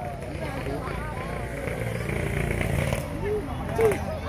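Voices of players and spectators calling out around a grass football pitch, with two short shouts near the end, the second the loudest moment, over a steady low rumble.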